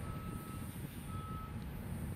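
Vehicle reversing alarm beeping twice, about a second apart, each beep a steady single tone lasting about half a second, over a low engine rumble.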